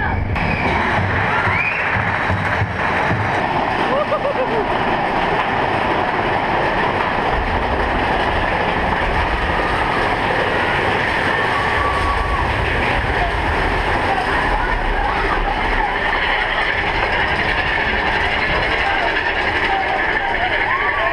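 Big Thunder Mountain Railroad mine-train roller coaster running along its track, a steady rumble and clatter, with riders' voices and shouts over it.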